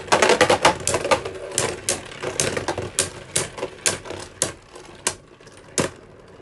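Two Beyblade Burst tops, Super Hyperion and Union Achilles, spinning and knocking into each other in a plastic Beyblade stadium. They make a rapid run of sharp clacks that is dense at first and thins out over the last few seconds as the tops lose spin.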